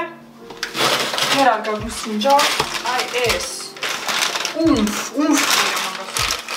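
Clattering and rustling from things being handled, a plastic food bag among them, with a few short thumps, while a woman talks at intervals.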